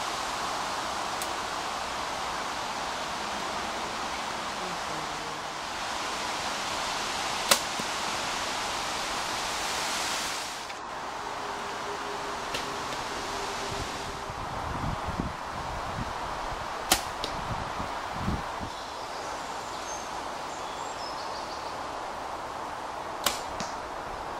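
Arrows shot from bows at foam 3D targets: three separate sharp snaps of the shots, about seven, seventeen and twenty-three seconds in, over a steady rustle of woodland air and leaves.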